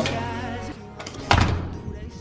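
Background music, with one heavy thump a little over a second in: a hotel room door shutting.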